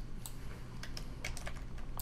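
Computer keyboard keys tapped in a quick, uneven run of light clicks as CSS code is copied and new lines are added, over a faint low hum.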